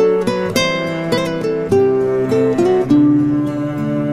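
Instrumental music: an acoustic guitar plucking a melody note by note over sustained lower notes.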